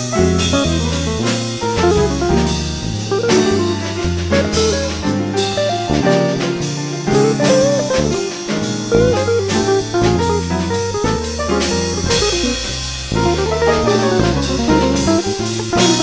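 Instrumental jazz: a guitar plays a melodic line with sliding notes over a stepping bass line and a drum kit keeping time on the cymbals.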